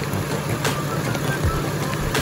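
Idling V6 engine of a 2004 Acura MDX with the air conditioning running, a steady low hum, under an even hiss of rain.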